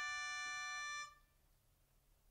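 Improvised ensemble music: a chord of several steady held notes that stops about a second in, followed by a near-silent pause.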